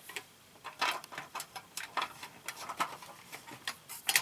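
Irregular plastic clicks and light knocks as a fluorescent-type LED tube is handled and seated into its lampholders on a metal light fixture, a dozen or so sharp taps with a few louder ones.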